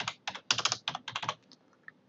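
Computer keyboard keys typed in a quick run, a phone number being entered, with the clicks thinning out about one and a half seconds in.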